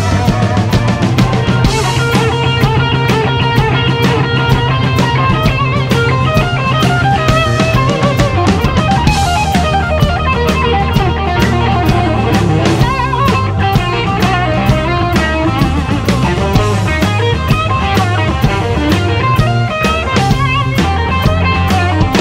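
Live blues-rock band led by an electric guitar solo on a Gibson Les Paul through a Marshall amp, with bent, wavering lead notes over a steady drum beat and a low bass line.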